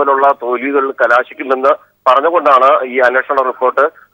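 A man talking in Malayalam over a telephone line, the voice thin and narrow, with short pauses between phrases.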